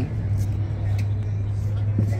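A steady low rumble with faint background voices over it.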